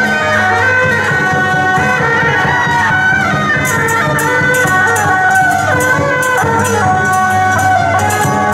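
Taiwanese beiguan ensemble playing in procession: suona double-reed horns carry a loud, shifting melody over percussion. Quick, sharp percussion strikes join in about three and a half seconds in.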